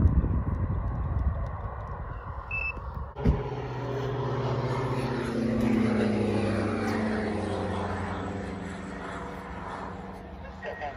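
Gusty wind rumbling on the microphone. About three seconds in, a Diamond DA62 twin-engine propeller aircraft flies past: its engine and propeller drone swells to a peak near the middle, then fades with a slowly falling pitch as it goes by.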